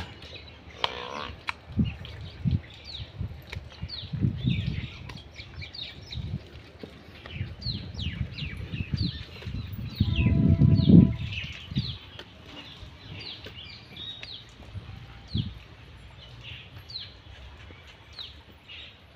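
Water buffaloes close by making short low sounds, with one longer, louder low call about ten seconds in. Small birds chirp throughout.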